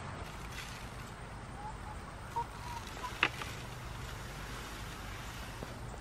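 Faint, steady outdoor background with a low rumble and a single short click about three seconds in.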